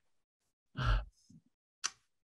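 A man's audible sigh into a close microphone about a second in, followed by a brief soft murmur and a short hiss of breath just before he begins to speak.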